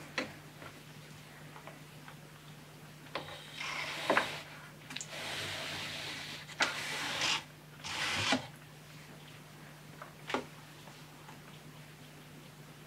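Weaving on a wooden rigid heddle loom. Several sharp wooden knocks and clacks come as the heddle is moved and beaten. In the middle of the stretch there are several seconds of rustling as the hand-spun yarn and shuttle are drawn through the warp.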